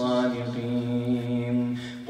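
A man's voice reciting the Qur'an in a melodic chanted style, holding one long steady note on a drawn-out vowel that fades near the end.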